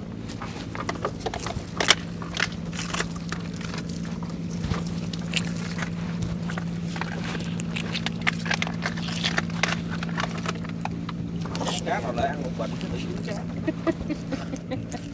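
A gill net being hauled by hand into a boat: water dripping and splashing off the mesh, with many small knocks and clatters as the net comes in against the hull, the sharpest about two seconds in. A steady low hum runs underneath.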